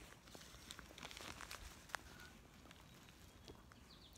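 Near silence: faint outdoor background with a few soft clicks, the clearest about two seconds in.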